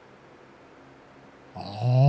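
Faint hiss, then about a second and a half in a low, buzzy pitched tone from the channel's logo intro starts abruptly and swells loud.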